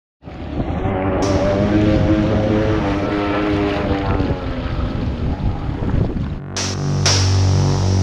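Water rushing and splashing at a surface-level camera as a motorized board passes, with wind on the microphone and a wavering motor tone. About six and a half seconds in, this cuts off suddenly and a steady low hum takes over.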